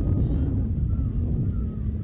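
Wind buffeting the microphone in open country: a steady low rumble, with a few faint bird calls above it.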